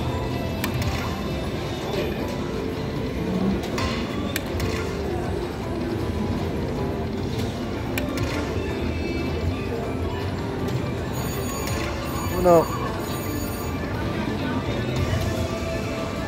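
Lightning Link Tiki Fire slot machine playing its free-spin music and reel sounds through the last spins of a bonus, over steady casino background chatter.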